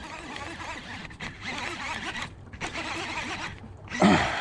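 Spinning reel being cranked in short spells with brief pauses while a hooked smallmouth bass pulls on the line.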